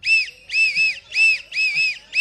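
Short, shrill whistle blasts sounded into a microphone, about four in two seconds, each rising and falling in pitch and some broken in two: a dawn wake-up whistle being imitated.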